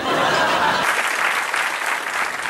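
Audience applause: a steady patter of many hands clapping that starts suddenly.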